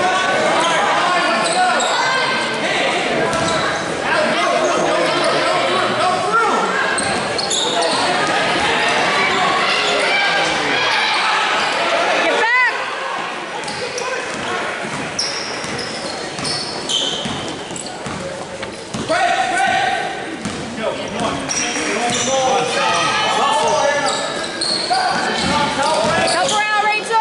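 Live basketball game in an echoing gymnasium: spectators and players calling out over one another, with the ball bouncing on the hardwood court. A short high squeak cuts through about halfway through.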